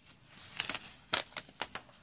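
Book pages stuck together along their acrylic-painted edges being pulled apart: a run of irregular sharp crackles and snaps that sounds like ripping paper, though the pages are not tearing, only the dried paint seal is breaking.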